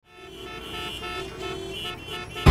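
City street traffic with several vehicle horns honking over one another, rising out of silence at the start.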